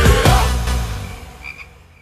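A transition sound effect for a TV show's logo: a loud whoosh right at the start that fades away, with a few faint short high chirps near the end.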